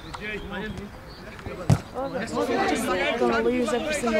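Voices talking and calling on and around a football pitch, with one sharp thud of a football being kicked a little under two seconds in.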